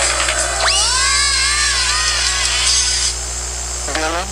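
A cartoon character's long, high yell that shoots up in pitch about half a second in, wavers for about two seconds and then fades. A steady low mains hum from the old off-air TV recording runs underneath.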